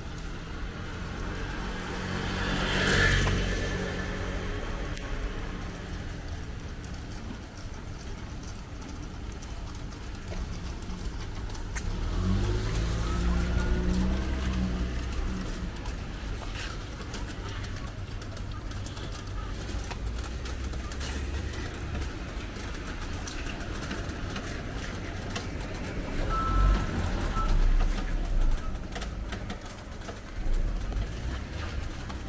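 City street ambience with motor traffic: a vehicle passes close, swelling and fading about three seconds in, and an engine runs nearby from about twelve to fifteen seconds in. A steady low rumble sits underneath throughout.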